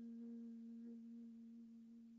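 A faint, steady ringing tone with a weaker overtone an octave above it, slowly dying away.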